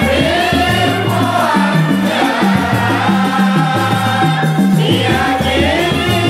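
Swahili Islamic group song in qaswida style: voices singing a chant-like melody together over a bass line that steps between a few repeating notes, with shaken percussion keeping time.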